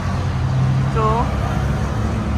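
Steady low rumble of road traffic and vehicle engines, with a short spoken word about a second in.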